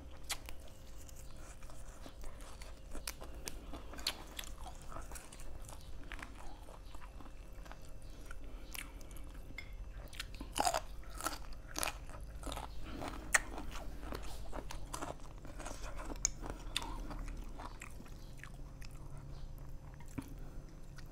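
A person biting and chewing crisp raw vegetables close to the microphone: a run of crunches, the loudest a little past the middle.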